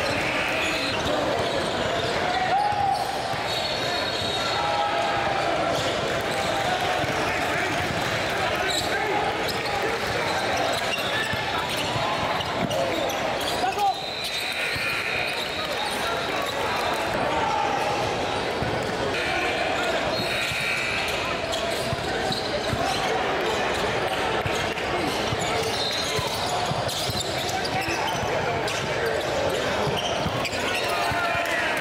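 Basketball game sounds in a gym: balls bouncing on the hardwood court among a steady hubbub of players' and spectators' voices.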